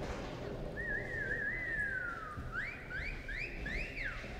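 Person whistling: a warbling note, then one long falling whistle, then four quick rising whistles in a row.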